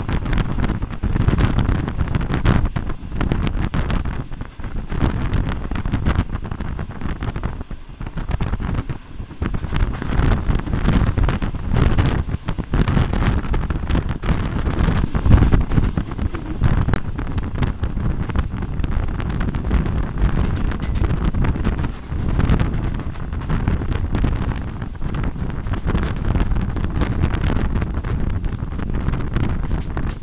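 Wind buffeting the microphone held out of a moving passenger train, over the train's running noise; the loudness surges and dips unevenly throughout.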